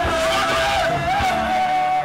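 A male singer holding one long, wavering note into a microphone over live band music through a PA; the note cuts off at the end.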